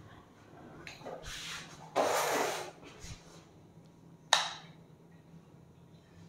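Handling and rustling noises as a cross-line laser level on a tripod is switched on, with one sharp click about four seconds in. A faint low hum runs underneath.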